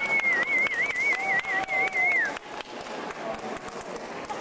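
A high whistled note with a quick warble, wavering about four or five times a second, that slides down and stops a little over two seconds in.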